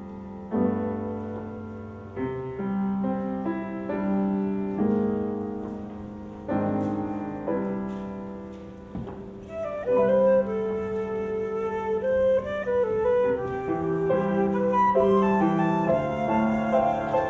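Concert flute with piano playing a slow, quiet piece: at first the piano plays alone, chords that ring and fade, then a little past halfway the flute comes in with the melody and the music grows louder.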